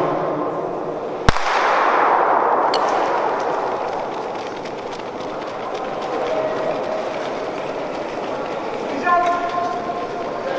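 Starting pistol fired once to start a 200 m sprint: a single sharp crack about a second in, echoing through the indoor arena, then steady hall noise.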